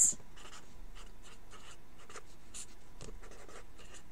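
Red marker writing on paper: a run of short, irregular strokes as letters are drawn.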